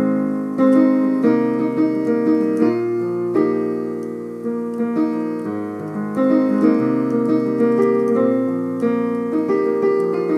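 Yamaha digital piano played with both hands, working through a repeating A-flat major, C minor and B-flat major chord progression; the chords are re-struck in a steady rhythm, with the upper notes moving as the chords change.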